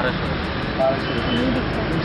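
Steady rumble of truck and road traffic noise, with faint voices briefly in the background.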